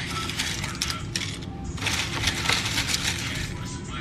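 Frozen spinach leaves crackling and rustling as handfuls are pulled from a plastic tub and dropped into a plastic blender cup: a dense run of small crisp crackles.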